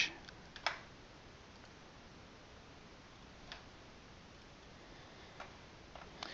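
A few faint computer mouse clicks over quiet room tone: one a little under a second in, the loudest, and weaker ones around the middle and near the end.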